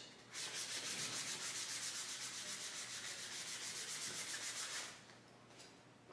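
Fine sandpaper rubbed lightly back and forth over a slick-surfaced printed image in rapid, even strokes, scuffing it so the gesso laid on next won't bubble up. The sanding stops about five seconds in.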